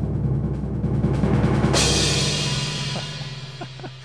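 A drum-roll sound effect played from a random name picker website, the build-up before a winner is revealed: a rapid roll that ends about two seconds in on a cymbal crash, which rings and fades away.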